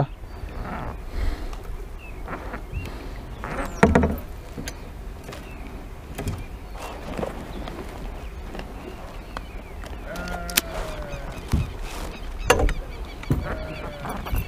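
Scattered knocks and clatter of fishing gear, a landing-net pole and a lip-grip tool, being handled against a plastic kayak, over a low steady rumble. The clearest knocks come about 4 s in and again near the end.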